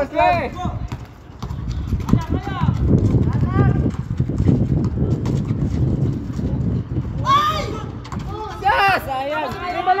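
Outdoor pickup basketball: a run of low thuds and knocks from the ball and players' feet on the asphalt, with players shouting now and then.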